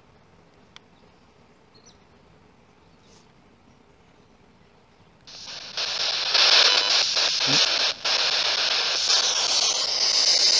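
Quiet ambience with one small click, then about five seconds in, loud radio-static hiss from a phone spirit box app switches on abruptly and runs on through the phone's speaker, broken by short flickers and one brief dropout near the end.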